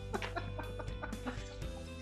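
A woman laughing in short, repeated bursts over background music.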